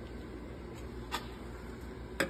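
Snowmobile exhaust spring being pushed off with a spring puller: one small sharp metallic click about a second in, over a low steady hum.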